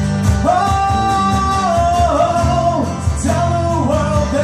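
Live acoustic rock band playing: strummed guitars, bass and a cajon keeping a steady beat. A male voice holds one long note from about half a second in, bending down around the two-second mark.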